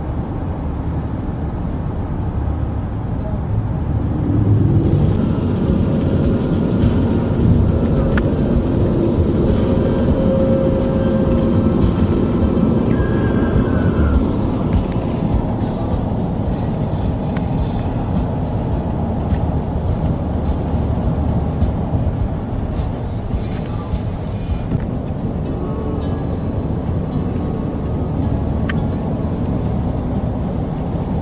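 Road and engine noise inside a moving car's cabin at highway speed, a steady rumble, with music from the car's radio playing over it.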